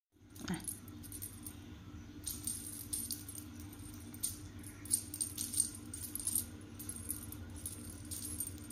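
Small jingle bell on a feather wand toy jingling in irregular bursts as a cat bats at it, over a steady low hum.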